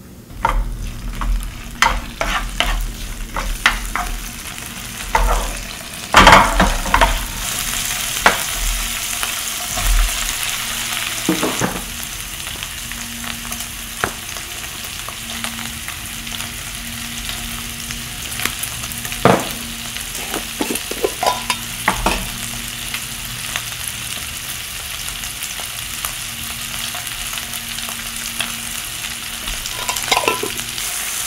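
Pork belly, garlic and mushrooms sizzling in a nonstick frying pan, with a steady hiss. A spatula scrapes and clacks against the pan often in the first dozen seconds, then only now and then.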